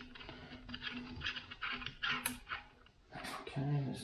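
Faint small clicks and scrapes of a loosened rifle action screw being spun out by hand. A man's voice starts near the end.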